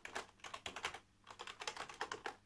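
Typing on a computer keyboard: a quick run of key clicks with a short pause about halfway, as a login password is entered.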